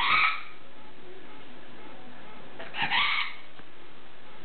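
Severe macaw giving two short, harsh calls, one at the start and one about three seconds later.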